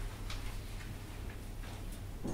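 Quiet room tone: a steady low hum with a few faint, scattered ticks or clicks.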